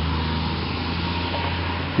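A motor running steadily: a low hum with a faint thin tone above it over a hiss.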